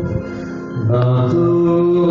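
A Syriac liturgical hymn sung by a man in long held notes. The sound dips briefly just after the start, then a new low phrase begins about a second in.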